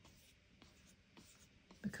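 Faint scratchy rubbing of a paintbrush worked in circular strokes on watercolor paper, with a few light ticks. A woman's voice comes in near the end.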